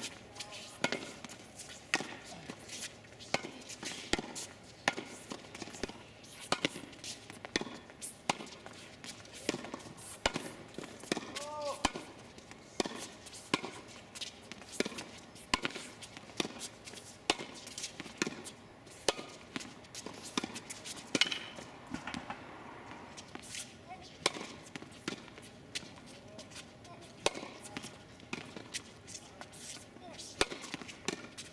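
Tennis balls struck by rackets and bouncing on a hard court during a volley rally: a long run of sharp pops, one every half second to a second, with short gaps between points.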